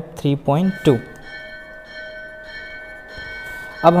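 A bell-like ringing with several steady pitches, starting about a second in and holding on through the rest.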